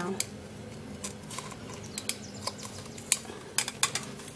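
A metal spoon crushing aspirin tablets in a bowl: scattered sharp clicks and light scraping, with a quick run of clicks near the end.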